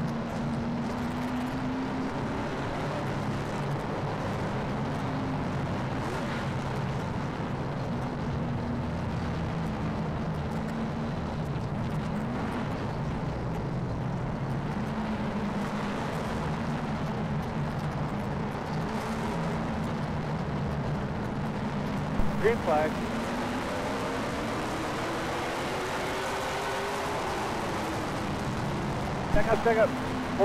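In-car sound of a late model stock car's V8 engine running steadily at a low, even pitch. About 22 seconds in the engine note climbs as the car accelerates.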